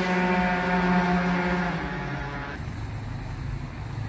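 A passing motor vehicle's engine, a steady pitched note that stops about two and a half seconds in, leaving a fainter low hum of traffic.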